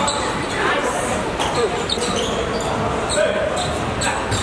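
Basketball game sounds: a ball bouncing on the court and players' indistinct shouts and calls, echoing in a large hall.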